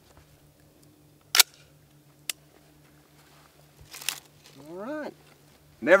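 A Robinson Armament XCR rifle set down on gravel: one sharp clack, a lighter click about a second later, then a short crunch of gravel.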